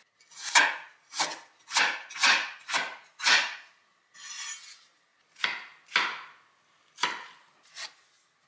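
Kitchen knife chopping a carrot on a wooden cutting board: about nine crisp chops at an uneven pace, with a softer rustle a little before halfway and a pause after it.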